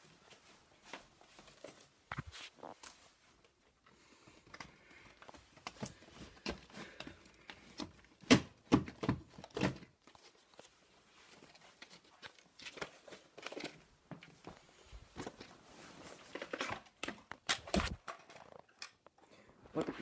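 Handling noise from VHS tapes and their plastic cases being picked up and moved: quiet rustling broken by scattered clicks and knocks, the sharpest about eight seconds in.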